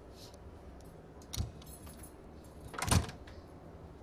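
Two soft knocks, about one and a half and three seconds in, the second louder, with a brief metallic jingle between them.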